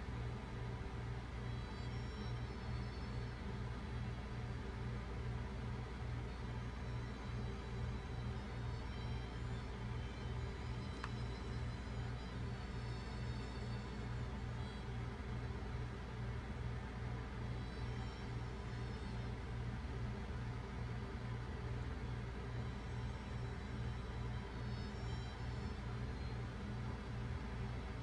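A steady low drone with a fast, even pulse, and faint high tones drifting in and out every several seconds.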